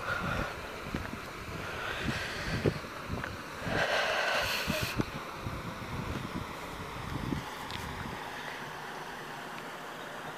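Wind buffeting the microphone in uneven gusts, with a louder rush of noise lasting about a second, about four seconds in.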